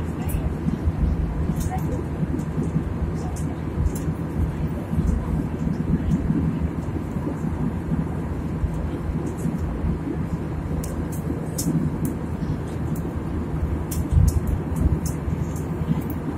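Airliner cabin noise in flight: the steady low rumble of the jet engines and rushing air, heard from inside the cabin, with a short laugh at the start and a few faint clicks.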